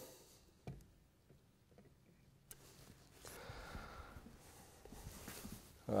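Quiet stage room tone with one faint click, then soft footsteps on a stage floor as a person walks away.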